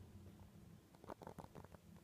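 Husky making a faint, brief grumble: a quick run of short soft pulses about a second in, lasting under a second, otherwise near silence.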